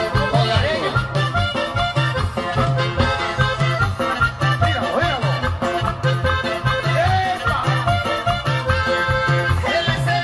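Mexican regional dance music played loud through a PA sound system, with a steady bass beat and melody lines over it.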